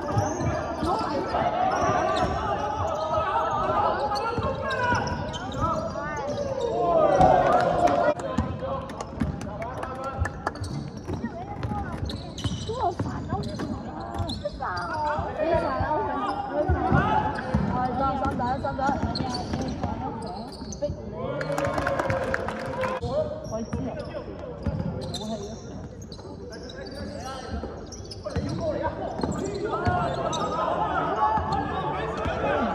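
A basketball game on an indoor hardwood court: the ball bouncing on the floor as it is dribbled and passed, with indistinct calls and shouts from the players and the bench.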